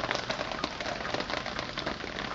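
Steady rain falling, a dense hiss of fine ticks heard through a phone microphone.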